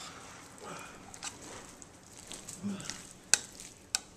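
A metal spoon stirring shredded chicken salad with mayonnaise in a plastic bowl: soft wet squelching and scraping, with two sharp clicks of the spoon against the bowl near the end.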